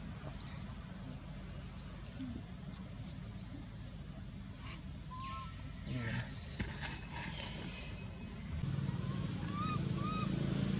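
Outdoor ambience of small birds chirping: short high sweeping chirps repeat every second or so over a steady low hum, and the hum grows louder near the end. A few brief arched squeaks are heard about halfway and again near the end.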